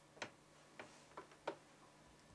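Four light, sharp taps at uneven intervals, the last one the loudest, over faint room tone.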